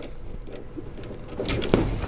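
Quiet handling noise of a long Torx driver working a bolt deep in the engine bay, then a brief louder scrape near the end as the tool almost slips from the hand.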